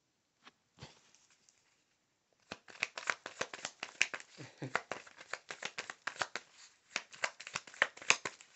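Tarot cards being shuffled by hand: a few scattered clicks, then from about two and a half seconds in a fast, irregular run of card snaps.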